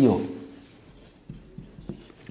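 Marker pen writing on a whiteboard: a few faint, short strokes in the second half as letters are drawn.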